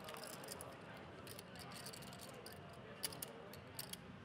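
Poker chips clicking faintly and irregularly as players handle their stacks at the table, over a low murmur of room noise.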